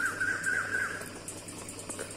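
A high, warbling whistle with a rapid wobble in pitch, which stops about a second in.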